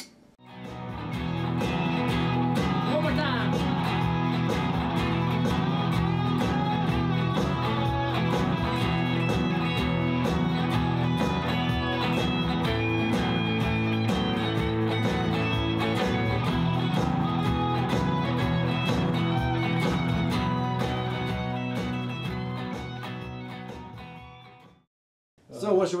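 Electric guitar music from a band, fading in at the start and fading out near the end.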